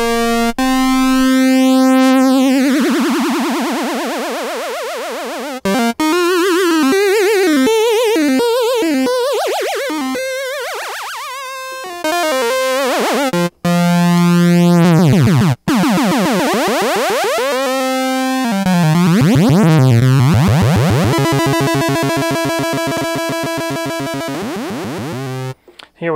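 Minimoog synthesizer holding notes while oscillator three, set as a low-frequency modulator, wobbles the pitch of the other oscillators up and down. The wobble changes speed as the knobs are turned, from slow swoops to a fast trill, and the sound cuts off briefly a couple of times. This is a test showing that the modulation section works.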